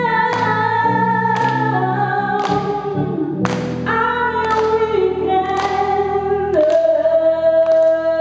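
A woman sings live over Roland Juno-Di synthesizer keyboard chords, with a regular beat about once a second. From about two-thirds of the way through she holds one long steady note.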